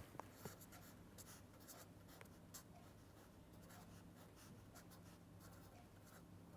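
Faint scratching of a pen writing on paper, with a few light ticks in the first couple of seconds, over a faint steady low hum.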